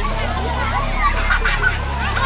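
Children calling out and squealing in a busy swimming pool: short, high, honk-like cries, clustered about halfway through, over a steady low hum.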